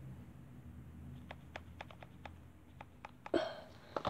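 Light clicks from a plastic toy blaster being handled, about eight in a second and a half, then a short louder burst near the end.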